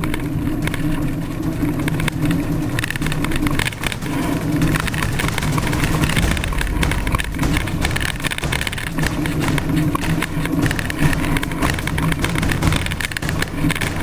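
Mountain bike on a fast dirt-track descent: steady wind noise on the camera microphone over constant rattling and the crunch of tyres on loose ground.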